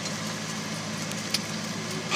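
Steady low hum inside a car's cabin with the engine running, and one faint click a little past halfway.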